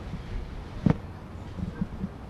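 A single sharp thump about a second in, over a steady low background of outdoor field noise, with a few softer knocks near the end.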